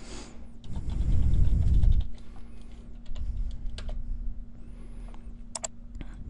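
Keys pressed on a computer keyboard close to the microphone: a stretch of dull thudding in the first two seconds and a pair of sharp clicks near the end, over a steady low hum. The key presses are the Windows key + U shortcut that opens the Windows 7 On-Screen Keyboard.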